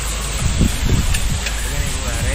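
Heavy rain falling, a steady hiss with a low rumble underneath.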